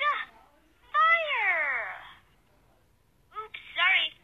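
High-pitched cartoon character voice: a short cry, then a long "Gaah!" scream that falls in pitch over about a second. Near the end comes a quick two-syllable "oops, sorry".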